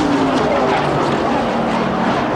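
NASCAR Winston Cup stock cars' V8 engines at full racing speed past the grandstand, their steady drone sagging slightly in pitch as they go by.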